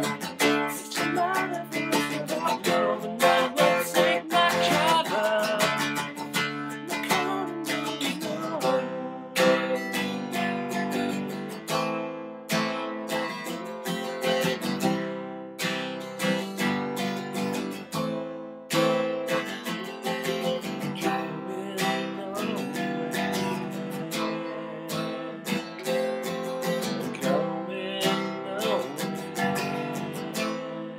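Acoustic guitar strummed in a steady rhythm through a mostly instrumental stretch of a song. A man's singing voice is heard over the first several seconds and again briefly near the end.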